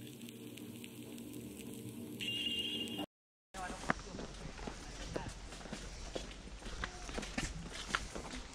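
Faint outdoor walking sound: footsteps on a path with distant voices, following a brief stretch of low steady hum where a thin high tone comes in about two seconds in, and a short dropout.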